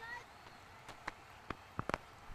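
Faint, steady cricket-ground ambience picked up by the field microphones, with a few brief sharp clicks, the loudest pair near the end.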